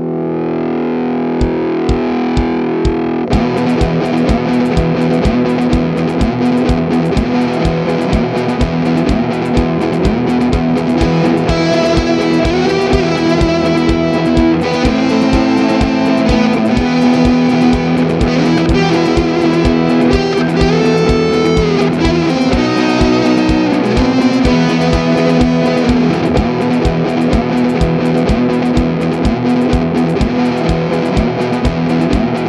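Rock instrumental music with distorted electric guitar, opening on a held chord, with a steady beat coming in about a second and a half in.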